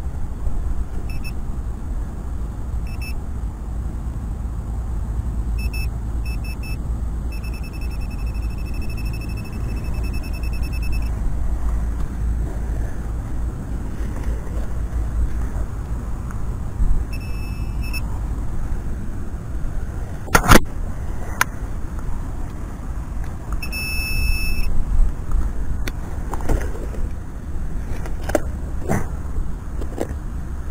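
A Minelab Pro-Find 35 pinpointer beeping at one high pitch, in short bursts and a longer pulsing run, as it picks up metal in the dug hole. A few sharp knocks of digging or handling, the loudest about two-thirds of the way in, over a steady rumble of wind on the microphone.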